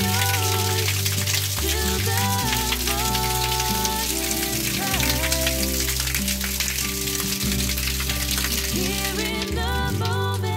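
Water pouring from an outdoor tap and splashing, a steady hiss, under background music.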